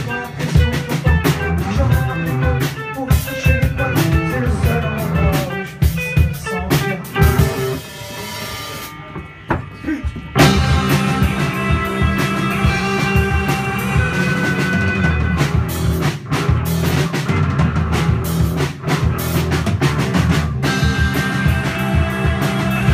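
Live rock band playing, with drum kit and guitars. About eight seconds in the band thins to a quieter break, then comes back in at full volume a couple of seconds later with loud held chords.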